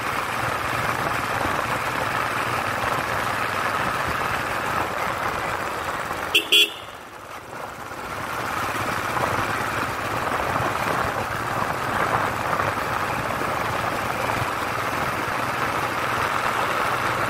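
Motorcycle engine and wind noise while riding steadily, broken about six seconds in by two short horn toots, the loudest sounds. The engine and road noise then dip for about a second and build up again.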